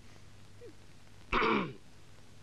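A man clears his throat once, a short gruff sound with falling pitch about a second and a half in, readying his voice to sing.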